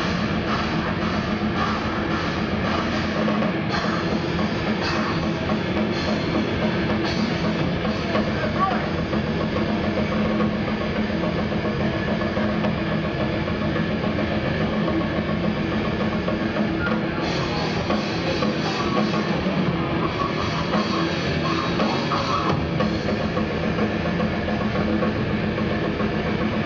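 Grindcore band playing live: fast drum kit, distorted guitar and vocals shouted into a microphone, one dense, unbroken wall of sound.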